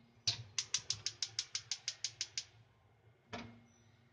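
Gas stove burner's igniter clicking rapidly, about six clicks a second for two seconds, then one more sharp click about three seconds in as the burner is lit under a steamer.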